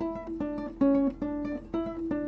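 Acoustic guitar picked as a melody of single notes, about two or three a second, each note ringing briefly before the next.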